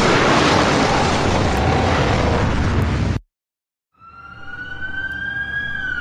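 Noise of a cartoon explosion, an even rushing, that cuts off suddenly about three seconds in. After a second of silence an emergency-vehicle siren fades in, its wail gliding slowly up and starting to fall near the end.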